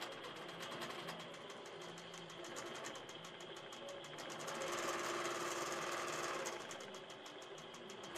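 INNOVA longarm quilting machine, guided by its AutoPilot computer, stitching a quilting pattern in a rapid, even needle rhythm. Its running sound swells for a couple of seconds midway.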